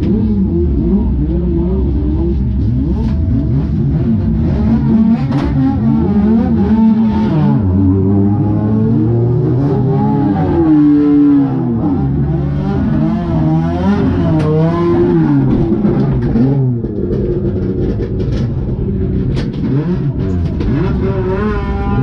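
Race car engines revving and idling, with several engine pitches rising and falling at once, heard from inside a touring car's cabin.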